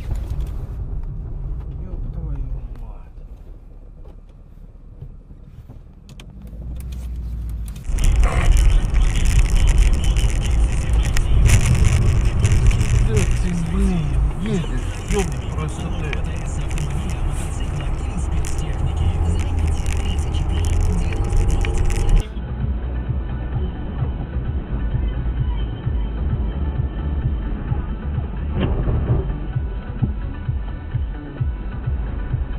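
Car interior driving noise picked up by dashcams: a low steady engine and road rumble, which changes abruptly about 8 seconds in and again about 22 seconds in.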